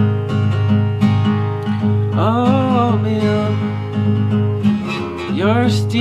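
Acoustic guitar strummed steadily as song accompaniment, with a voice singing a held, bending note about two seconds in and coming in again near the end.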